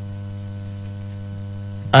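Steady electrical mains hum, a low buzz with a stack of even overtones at an unchanging level.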